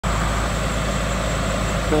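The heavy crane truck's diesel engine running steadily at idle, an even low rumble.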